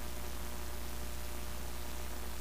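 Steady low electrical hum under a constant hiss, unchanging throughout: the noise floor of the chamber's open microphone and audio feed.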